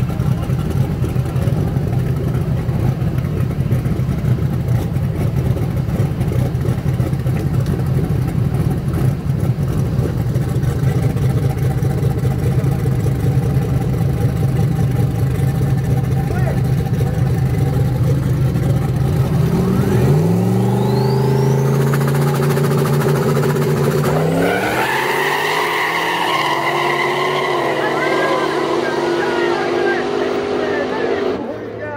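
Two drag cars idling at the start line with a heavy, steady rumble, then launching about two-thirds of the way through: the engine notes rise sharply and climb again in steps as the cars pull away down the road.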